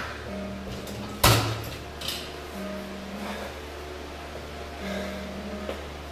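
Reverse hyper machine's pendulum arm and weight plate being worked. There is one loud metal clunk about a second in, then lighter knocks, with recurring creaking tones over a steady low hum.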